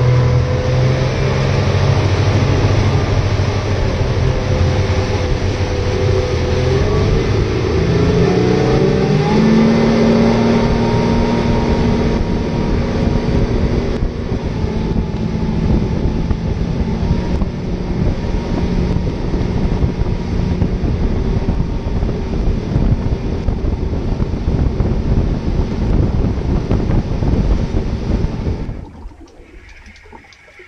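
Haines Hunter 680 Encore motorboat's engine speeding up, its pitch rising over the first ten seconds or so, then running steadily at speed amid wind and rushing water. The sound drops away sharply about a second before the end.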